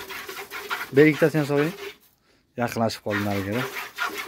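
Hand-milking a cow: milk squirting in quick rhythmic streams into a bucket. A voice rises over it about a second in and again near the end, with a brief break to silence just after halfway.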